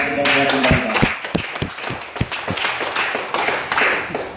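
A small group clapping, with several low thuds in the first two seconds, as an unaccompanied sung line finishes right at the start.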